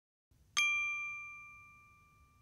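A single bright chime-like ding, struck once about half a second in and ringing on as it slowly fades.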